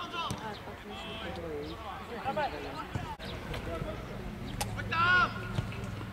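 Children and adults calling and shouting on a youth football pitch, loudest in a high shout about five seconds in, with a few sharp knocks of the ball being kicked.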